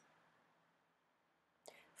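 Near silence: room tone, with a short, faint intake of breath near the end.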